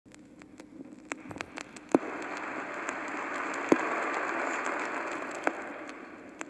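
Vinyl record surface noise: a hiss peppered with crackles and pops that fades in over the first two seconds and eases off near the end, with two louder pops.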